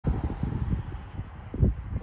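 Wind rumbling on the microphone in irregular gusts, loudest about one and a half seconds in.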